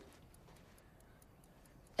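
Faint, regular ticking in a quiet room, such as a clock makes, during a pause in speech.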